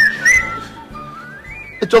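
Whistling: a couple of short high notes, then a smooth upward-sliding whistle in the second half, over soft background music.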